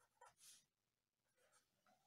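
Near silence, with a few faint strokes of a marker pen drawing on a paper sheet in the first half second.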